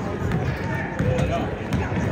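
Basketball dribbled on a hardwood gym floor, repeated bounces over the murmur of spectators' voices.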